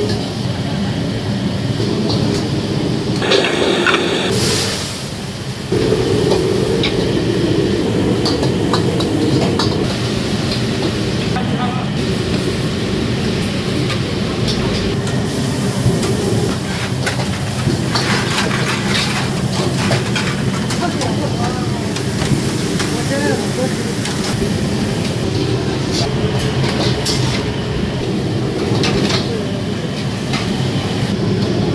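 Steady rushing noise of high-pressure wok burners and kitchen extraction running in a commercial Chinese kitchen, with scattered metal clanks of a ladle against a wok as greens are stir-fried.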